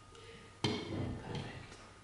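Slate slabs knocking and clattering against each other as they are stood up around the foot of a walking stick: one sharp knock about two-thirds of a second in, with a short ring, followed by a few lighter clicks.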